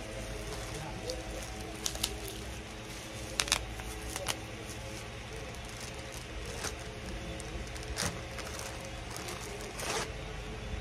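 Handling noise: a few scattered short clicks and taps as small items are handled, over a steady low room hum.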